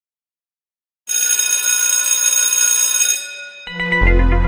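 A bright, high bell ringing for about two seconds, starting a second in, then intro music with a heavy bass line coming in just before the end.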